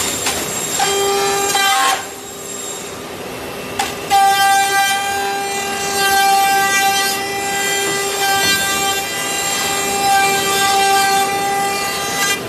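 CNC router spindle running with a steady high whine as it trims a plastic suitcase shell. The whine drops away about two seconds in and comes back at about four seconds.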